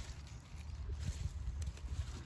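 Low rumble on the microphone, with faint rustling and a couple of soft snaps near the end as rocket leaves are gathered and picked by hand.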